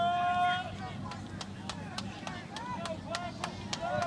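Voices shouting at a football game: one long call at the start, then short shouts mixed with a quick run of sharp claps.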